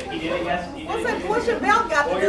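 Several people chatting at once in a large room, their voices overlapping without clear words.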